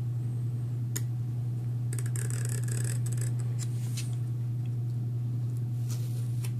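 Pen-style craft knife blade scoring through duct tape on a cutting mat: a click about a second in, then a scratchy cutting stroke about two to three seconds in, with a few light ticks after, re-cutting tape that had not been cut through. A steady low hum runs underneath.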